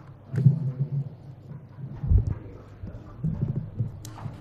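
Handling noise at a lectern picked up by its close microphones: irregular low thumps and knocks of papers and hands on the podium, with a sharp click about half a second in and the heaviest thump about two seconds in.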